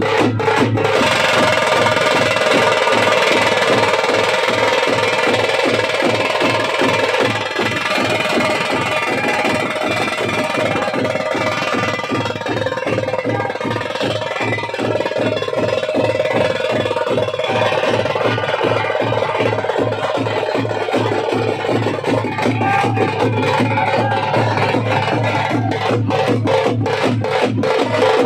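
Live Veeragase folk-dance drumming: fast, steady drumbeats with a held melodic tone sounding over them throughout.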